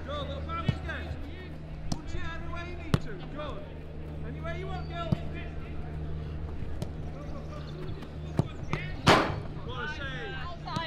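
Footballs being struck on a grass training pitch: sharp knocks of boot on ball every second or two, the loudest about nine seconds in, with distant shouts and calls from players and coaches and a steady low hum underneath.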